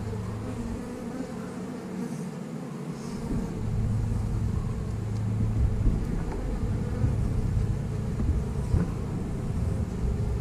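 Honey bees buzzing around an open hive as its frames are lifted out, a steady hum that fades for a moment a couple of seconds in and then comes back.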